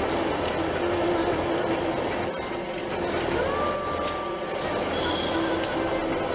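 Hyundai i20 car rolling slowly, heard from inside its cabin: a steady rumble of engine and tyre noise, with a faint thin tone about halfway through.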